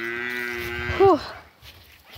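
A young man's voice singing a long held note, then a short, louder sung syllable that bends up and down about a second in.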